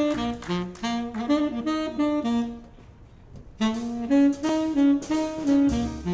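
Tenor saxophone playing an unaccompanied jazz blues line, breaking off for about a second midway before going on. The rhythm section comes in underneath near the end.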